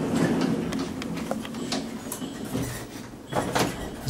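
Hotel passenger lift running as it travels down, a steady low rumble with a few scattered clicks and knocks.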